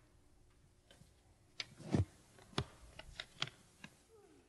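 Handling noise on a handheld microphone: a run of sharp clicks and knocks starting about one and a half seconds in, the loudest a low bump about two seconds in.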